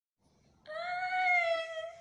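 A single long, high-pitched vocal cry starting about half a second in, held steady and easing slightly lower in pitch.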